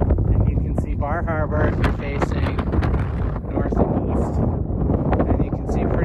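Strong wind buffeting the microphone: a steady low rumble with irregular gusty thumps.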